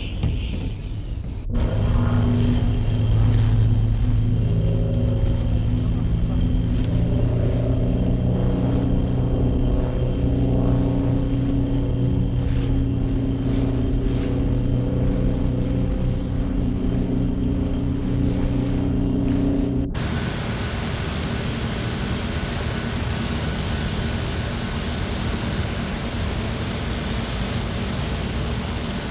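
Engine running steadily as a pitched drone with several hum tones. It cuts off abruptly about two-thirds of the way through and gives way to a rougher, hissing mechanical noise.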